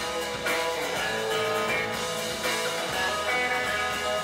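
A live rock band playing, with guitar to the fore over drums and bass.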